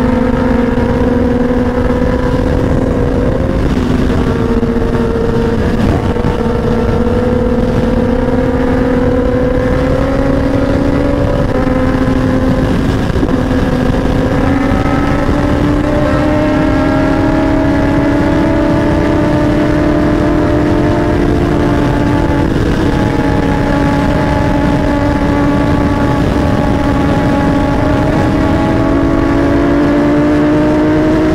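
Sportbike engine pulling hard in sixth gear at high speed, its note climbing slowly and steadily as the bike accelerates, with wind noise rumbling on the microphone.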